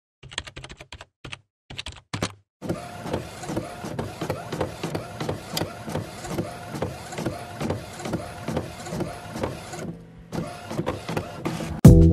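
Synthetic intro sound effects: a quick run of sharp digital clicks, then a fast rhythmic mechanical whirring pulse, about three beats a second, that stops about ten seconds in and briefly returns. A loud hit comes right at the end.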